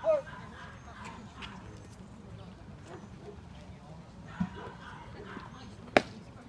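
A pitched baseball smacking into the catcher's leather mitt: one sharp, very short pop near the end, over faint spectator voices.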